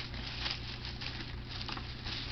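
Thin plastic shopping bag rustling and crinkling as it is handled and rummaged through, a dense run of small irregular crackles.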